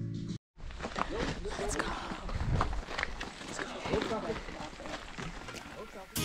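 Background music that cuts off about half a second in, followed after a moment's gap by indistinct voices of several people talking, with footsteps on a stony path.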